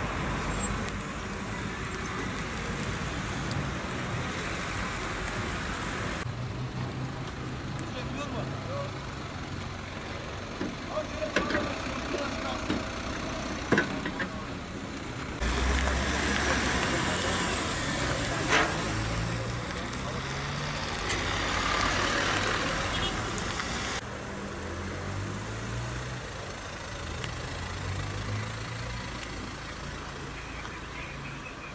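Road traffic: cars passing and engines running, some rising in pitch as they speed up, with voices in the background. A few sharp knocks stand out, and the sound changes abruptly at several cuts.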